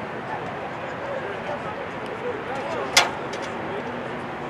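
Indistinct voices of lacrosse players and spectators carrying across the field, with one sharp crack about three seconds in, the loudest sound.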